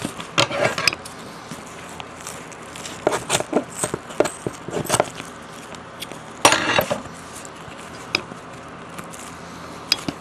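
Plastic wrapping and packing tape being pulled and handled around a potted plant, crinkling and crackling in irregular bursts; the loudest burst comes about six and a half seconds in.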